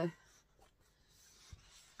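Faint rustle of printed paper sheets being handled, with one soft low thump about one and a half seconds in.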